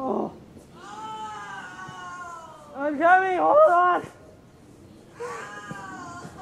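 A person's voice making wordless, wailing cries: one long, slowly falling cry about a second in, then a louder run of three rising-and-falling wails, and another cry starting near the end.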